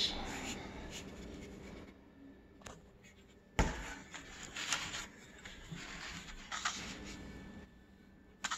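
Hands handling a guitar neck over tissue paper and cardboard: rubbing and rustling, with a sharp thump about three and a half seconds in and a few softer knocks after it.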